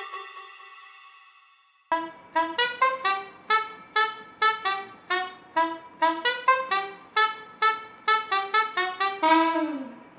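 A held note fades out, then a brass-sounding horn plays a quick, jaunty run of short notes, about two or three a second, ending in a downward slide in pitch.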